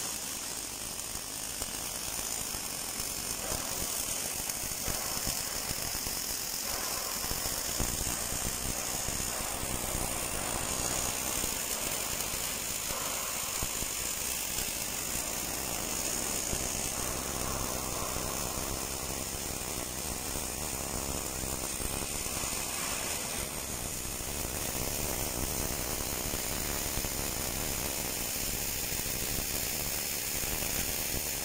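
Automatic MIG welding arc running along a container panel butt seam: a steady crackling hiss that holds an even level throughout.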